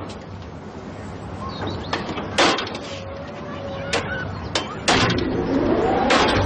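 A carousel being switched on: a few sharp clicks and clunks from its mechanism, then about five seconds in the sound swells with a rising tone as it starts to run and music begins.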